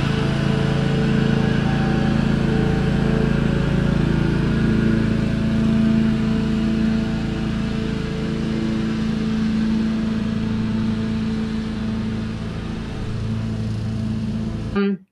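A motor vehicle engine running steadily, a constant low drone with a hum that holds one pitch throughout.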